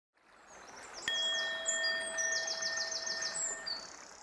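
Opening sound logo: high bird chirps and twitters, with a single bell-like chime struck about a second in that rings steadily and fades out near the end; a quick run of about seven falling chirps comes in the middle.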